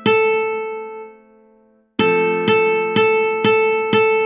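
Ukulele playing a melody from tab, one plucked note at a time. A single note rings and dies away. After a short pause the same open-string note is plucked over and over, about two times a second.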